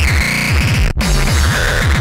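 Speedcore track: very fast, densely repeated distorted kick drums under a harsh synth line that slides downward in pitch. The sound cuts out for an instant about halfway through.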